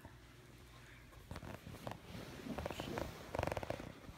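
A lop-eared rabbit chewing leafy greens close to the microphone: a quick run of small crunching clicks that starts about a second in and gets faster and denser toward the end.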